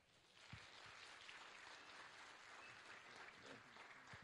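Congregation applauding, a faint, steady patter of clapping that starts just after the beginning.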